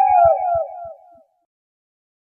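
A howling call sound effect, a long sliding cry with a few low thumps under it, fading out about a second in.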